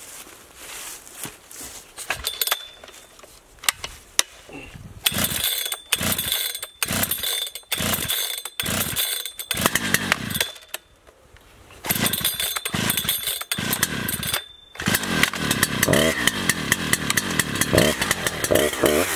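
Husqvarna 3120 XP two-stroke chainsaw being pull-started: two bouts of quick, repeated pulls on the starter cord, and the engine catches about fifteen seconds in, then runs and revs up and down.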